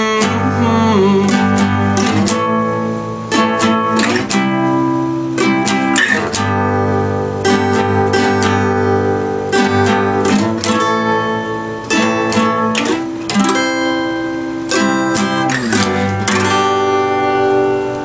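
Acoustic guitar strummed in chords, an instrumental stretch with no singing, the strokes coming in a steady rhythm over ringing chords.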